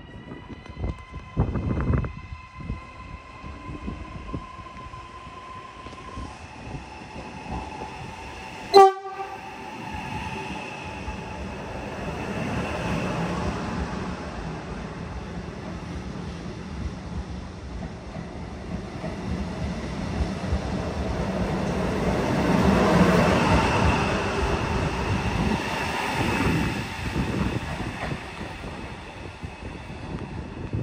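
Electric regional trains in a station: a steady whine at first, then one very short, very loud horn toot about nine seconds in, followed by the rolling rumble of a train running past close by, building to its loudest about two-thirds of the way through and easing off near the end.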